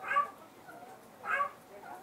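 A Pomeranian gives two short, high whines about a second apart while its ear is being cleaned.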